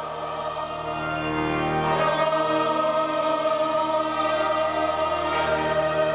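A large mixed choir singing sustained chords, swelling louder about one to two seconds in and then holding.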